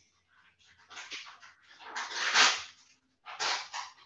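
A run of short, breathy huffs and sniffs on an open video-call microphone, the loudest about two seconds in.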